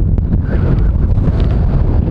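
Wind buffeting the microphone of a handheld camera outdoors, a loud steady low rumble, with a couple of faint clicks in the first moments.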